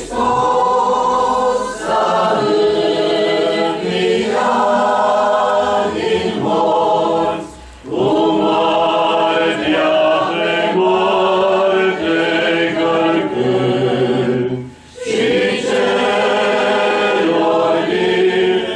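Unaccompanied choral singing of Orthodox Easter chant in long sustained phrases, with two brief pauses about 7.5 and 15 seconds in.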